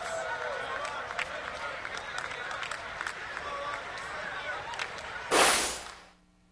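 Basketball arena crowd after the final whistle: a steady din of many voices with scattered claps and calls. Near the end a short, loud burst of noise, then the sound cuts out almost completely.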